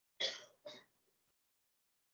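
A person clearing their throat into a microphone: two short rasping bursts in the first second, then silence.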